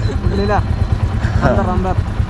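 Men talking at the roadside, two short phrases, over a steady low rumble.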